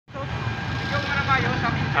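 Outdoor background noise: a steady low rumble with faint voices of people talking in the background.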